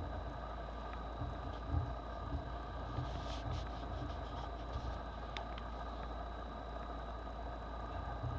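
Old paper songster booklet handled and its pages turned: a soft paper rustle about three seconds in and a light tick a couple of seconds later, over a steady low background hum.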